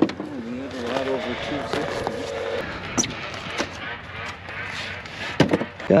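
Indistinct voices in the background, with sharp knocks about three seconds in and again near the end as gear is handled in a plastic ice-fishing sled.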